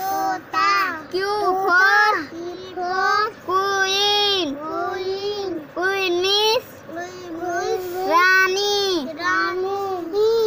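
A young child's high voice singing in a sing-song chant, one drawn-out syllable after another with short breaks between.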